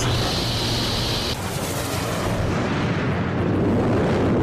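Cartoon sound effect of a loud, steady rumble, with a high hiss over the first second or so, as the ice-covered prison ship plunges into the frozen dimension.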